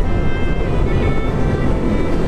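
Motorcycle riding at steady speed, its engine mixed with heavy wind noise on the camera microphone, under background music.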